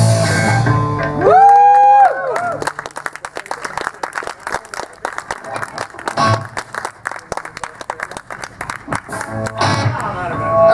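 A rock band ends a song live: the full band plays, then a loud final held note that bends up and falls away about two and a half seconds in. The audience then applauds for the rest of the time.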